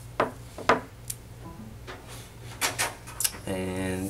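A plastic smartphone gimbal stabilizer being handled and turned over: a string of short knocks and clicks, with a cluster of them near the end, followed by a brief hummed voice as speech resumes.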